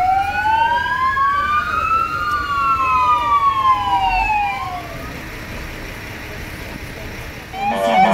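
Two fire engine sirens wailing together, each in slow rising and falling sweeps that overlap. They fade away about five seconds in, leaving quieter background noise.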